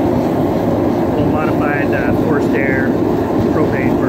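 Gas ribbon burner forge running with forced air: a steady, loud rushing noise from the flames at the row of cast-iron pipe nozzles and the electric blower that feeds them.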